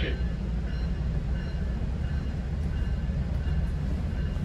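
Steady low rumble of a GO Transit bilevel train coach running along the track, heard from inside the passenger cabin.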